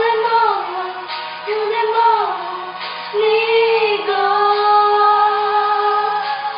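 A teenage girl singing a slow ballad solo, holding long notes with vibrato and sliding between pitches.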